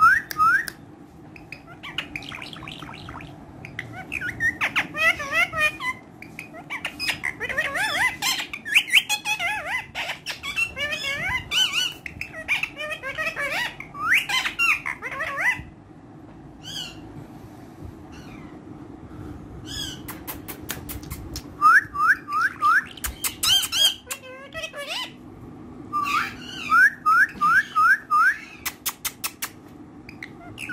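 Indian ringneck parakeet calling in bursts of chattering squawks and chirps, with runs of quick rising chirps in the second half, among sharp clicks.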